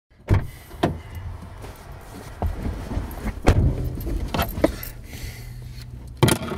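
Inside a car: a steady low engine hum with several sharp knocks and thumps and some metal jingling.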